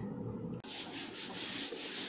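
A whiteboard being wiped with a duster: a dry, scratchy rubbing in uneven strokes that starts about half a second in.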